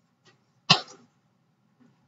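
A single short cough about two-thirds of a second in.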